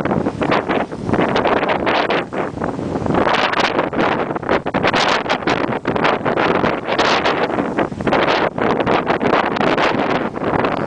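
Wind buffeting the microphone of a camera moving fast downhill, a loud gusting rush that surges and dips throughout, mixed with the scrape of snowboards carving over snow.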